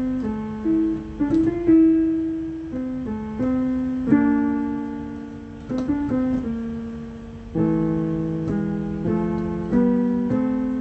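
A single instrument playing slow chords and held notes in the middle register, each struck, ringing and fading away, with a couple of faint clicks on note attacks.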